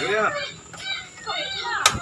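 A single sharp click near the end from the piezo igniter of a portable butane gas stove as its burner is lit, with voices around it.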